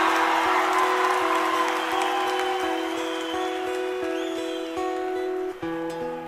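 Live band music with long held notes as a concert audience applauds and cheers, the applause dying away over the first couple of seconds. A new, lower chord comes in near the end.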